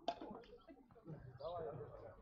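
Faint voices of players calling to one another on the court, with a single sharp click just after the start.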